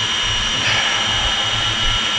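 7-inch FPV quadcopter sitting armed on the ground, its Brother Hobby 2507 1500KV brushless motors spinning HQ 7040 tri-blade props at idle: a steady high whine with a low hum beneath.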